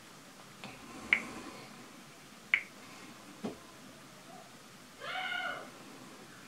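A few sharp clicks and taps from a smartphone being handled and tapped, the two loudest about a second and two and a half seconds in. About five seconds in comes a short, high call that rises and falls in pitch.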